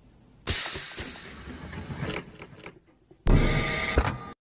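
Sound effects of an animated logo intro: a sudden noisy whoosh about half a second in that fades away over a couple of seconds with a falling sweep, then a louder booming hit near the end that cuts off abruptly.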